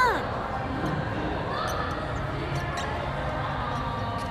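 A marker pen writing an autograph on a photo print, in short strokes, with faint low knocks against the desk.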